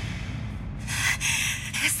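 Dramatic sound effect: a low, dark rumble, joined a little under a second in by a harsh rushing hiss that carries on to the end.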